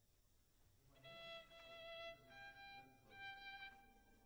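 A violin played softly: two long bowed notes, the second a little higher than the first, beginning about a second in.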